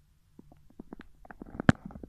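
Handling noise: a run of irregular small crackles and clicks, with one sharp click near the end.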